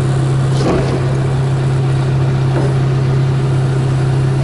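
Excavator's diesel engine running steadily at a constant speed, heard from inside the cab as an even low drone with a strong, unwavering hum.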